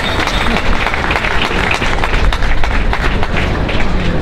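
A crowd applauding: many hands clapping in a dense, steady run.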